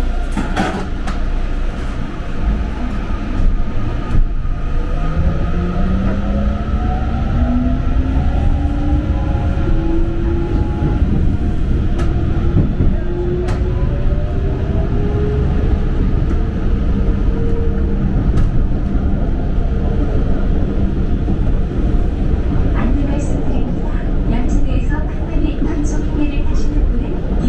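Electric commuter train heard from inside the car as it pulls away: the traction motors' whine rises steadily in pitch from about five seconds in until about eighteen seconds, over a constant rumble of wheels on rail, with a few sharp clicks.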